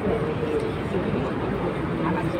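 Steady outdoor background noise with faint voices of people standing nearby.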